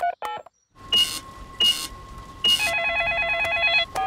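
Cartoon mobile phone: a couple of quick keypad beeps as a number is dialled, then a faint steady line tone broken by three short bursts of hiss. About two and a half seconds in, a trilling electronic ring sounds for just over a second as the call rings through.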